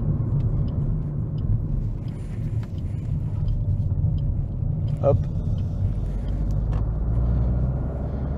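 Inside the cabin of a moving 2017 Suzuki Swift SHVS mild-hybrid hatchback: a steady low engine and road rumble that swells slightly near the end. Faint regular ticking runs through it at about one and a half ticks a second.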